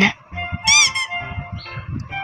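Soft background music for children with steady tones and a light beat. A short high squeaky sound effect rises and falls about three-quarters of a second in.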